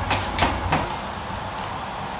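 A few light clicks and taps, three of them in the first second, over a steady low rumble.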